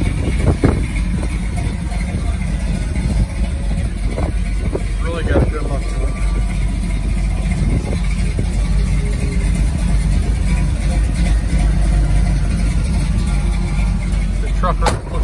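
Steady low rumble of an idling engine, with a single knock about half a second in.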